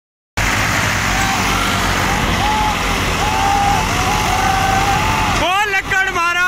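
Eicher 485 diesel tractor engine straining under load in a rope tug of war, a steady heavy din with faint shouts over it. About five seconds in it cuts abruptly to loud shouting voices.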